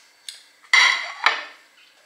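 Metal serving spoon clinking and scraping against a cooking pot and plate while food is dished up: a light tap, then a short scrape and a sharper clink a little past the middle.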